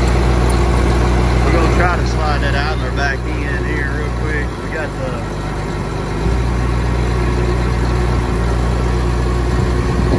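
Heavy-equipment diesel engine idling steadily with a low hum that thins for about two seconds near the middle.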